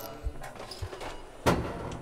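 A single sharp knock about one and a half seconds in, with a brief ring after it, preceded by a few soft, low thumps.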